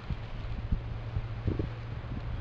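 Wind buffeting the camera microphone outdoors: a steady low rumble under a hiss, with a few soft bumps about one and a half seconds in.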